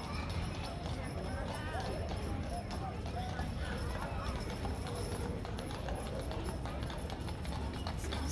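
A pair of horses' hooves clip-clopping on the paved street as they pull a wheeled sleigh, over the steady chatter of a crowd of people.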